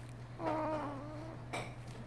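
A two-month-old baby cooing once, a drawn-out vocal sound of about a second that wavers and dips slightly in pitch, followed by a short click.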